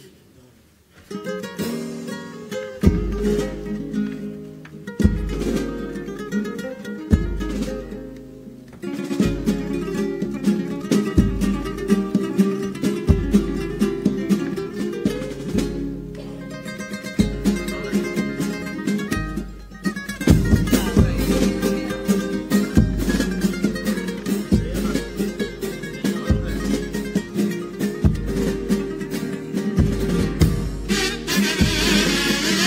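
Instrumental introduction to a comparsa pasodoble, starting about a second in: Spanish guitars strummed, with a drum beat that has a deep thump about every two seconds. By the end, carnival kazoos (pitos) play the melody over the guitars.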